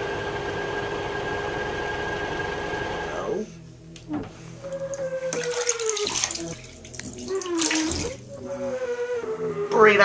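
A steady hum for about three seconds, then water poured over a cat in a bathtub, with two bursts of splashing in the second half.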